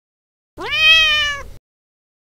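Turkish Van cat giving one long meow, sliding up in pitch at the start, then held and falling slightly. It begins about half a second in and lasts about a second.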